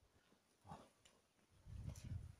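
Near silence, broken by one brief faint vocal sound, like a grunt or breath, a little under a second in, and a low rumble starting near the end.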